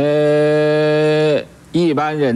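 A man's voice holds one long vowel at a level pitch for about a second and a half, then stops: a drawn-out syllable in slow Mandarin speech, followed by more speech near the end.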